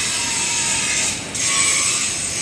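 Steady, loud machinery noise, a dense hiss with a brief dip a little past the middle.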